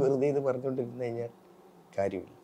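A man's voice, one drawn-out sound on a steady low pitch, stops about a second and a half in. After a short pause, speech starts again at the very end.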